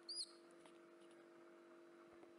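A baby monkey gives one brief, high squeak right at the start. After it there is only a faint, steady hum.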